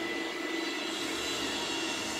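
A steady, even background hum with a faint thin whine running through it.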